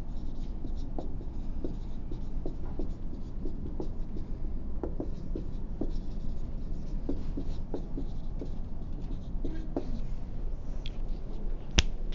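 Handwriting: a string of short, faint scratching strokes, with one sharp click near the end.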